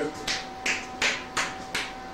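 Fingers snapping five times in a steady rhythm, a little under three snaps a second, over a faint steady background hum.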